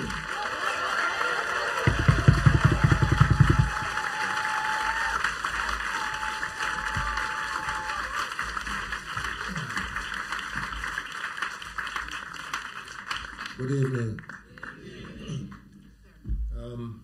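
Audience applauding, dying away after about thirteen seconds, with a short run of rapid low thumps about two seconds in. A man's voice comes in briefly near the end.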